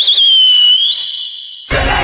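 A loud finger whistle. A single high note wavers at first, dips slightly, then jumps up to a higher held note. It cuts off abruptly near the end as loud music comes in.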